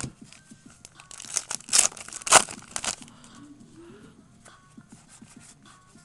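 A foil trading-card pack wrapper being torn open in a few quick rips between about one and a half and three seconds in, the loudest near the middle. Fainter rustling follows as the cards are handled.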